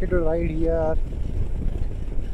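A motorcycle engine runs steadily with wind and road noise while the bike rides along. During the first second, a man's voice sings over it on steady held notes.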